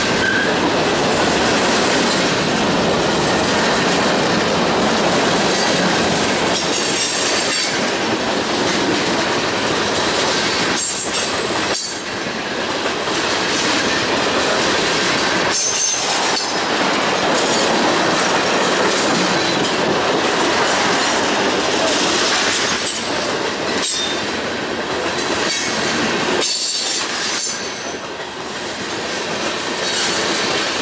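CSX manifest freight train's covered hoppers and tank cars rolling past close by: a steady loud rumble of steel wheels on rail with clatter over the rail joints, and brief high wheel squeals a few times.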